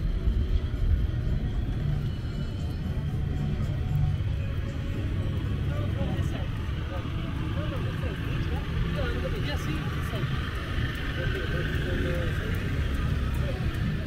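Outdoor promenade ambience: a steady low rumble, with people's voices passing, clearest in the second half, and music in the background.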